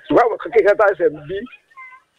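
A person speaking, then a brief steady high tone near the end.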